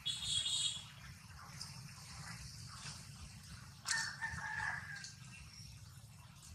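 Two short, high-pitched animal calls: a squeal right at the start and a longer call about four seconds in, over a steady low background rumble.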